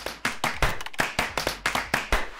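A quick, irregular run of sharp clap-like hits, roughly eight to ten a second, played as a transition sound effect under an animated title card.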